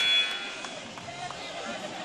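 Arena room noise: a low, even murmur of a sparse indoor crowd after a commentator's last word. A steady high tone stops about half a second in.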